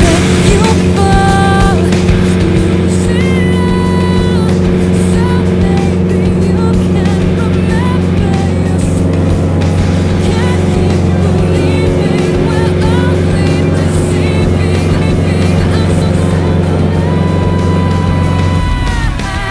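Single-engine light plane's piston engine running steadily, heard from inside the cabin, with rock music playing over it.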